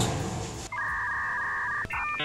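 A steady electronic beep of two pitches held together, starting about two-thirds of a second in and lasting about a second before it cuts off.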